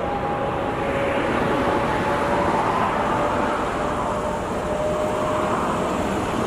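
Steady noise of motorway traffic going by, with a faint hum that slowly rises in pitch.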